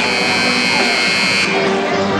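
A loud electric buzzer sounds over music for about a second and a half, then cuts off abruptly.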